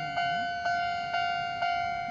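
Japanese railway level-crossing warning bell ringing at about two strikes a second, each strike a single clear tone that fades before the next. It is signalling an approaching train with the barrier down.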